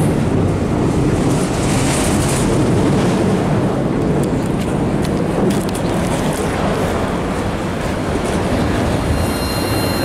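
Slow freight train rolling across a steel-girder railroad bridge, heard from underneath and beside it: a steady, loud rumble of the cars and wheels on the rails, with a few clanks in the middle.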